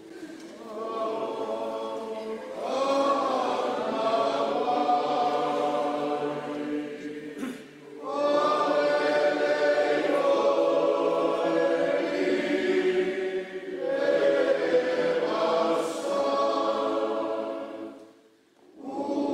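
A large group of people singing together like a choir, in long sustained phrases, with a short break for breath about eight seconds in and the singing falling away at the very end.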